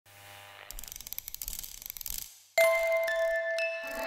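Studio logo sound sting: a fast mechanical clicking that grows louder, a moment's silence, then a single bell-like chime that rings on steadily.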